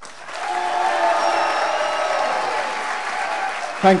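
Audience applauding, a steady clatter of many hands clapping that starts as the flute solo stops.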